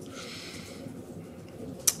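A pause in a man's speech at a microphone: low room noise, then one short sharp click just before he speaks again.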